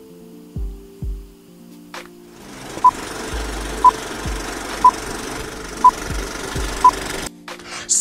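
Background music with a beat, then an old-film countdown leader sound effect: a crackling hiss with a short, high beep once a second, five beeps in all. The music returns briefly near the end.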